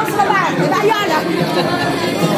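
Chatter of several people talking over one another around a crowded table, lively and fairly loud.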